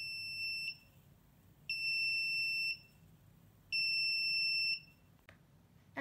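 Arduino-driven electronic buzzer sounding a steady high-pitched beep, about a second on and a second off, three times: the script switches the buzzer on and off every second to imitate an ambulance siren.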